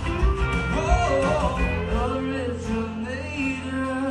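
Live band playing a country-soul song: a man singing over strummed acoustic guitar, electric guitar, bass and drums.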